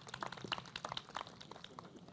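Applause from a small group of people, a quick patter of hand claps that thins out near the end.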